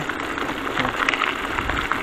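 Bicycle tyres rolling over a loose gravel track: a steady crunching and crackling of small stones under the wheels, with a low rumble from the ride.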